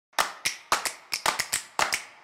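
Quick rhythmic clap-like percussion hits, about four or five a second, opening an intro music track.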